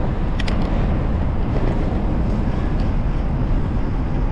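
Steady wind rumble on the microphone of a camera riding on a moving bicycle, mixed with road noise. A couple of sharp clicks come about half a second in.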